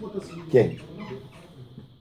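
A man's quiet speech: a short "ken" (yes) about half a second in, with faint murmuring around it, softer than the talk before and after.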